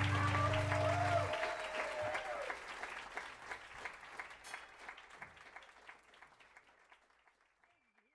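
A small club audience applauds and cheers at the end of a jazz trio piece. The band's last held low note stops about a second in. The applause then fades out steadily.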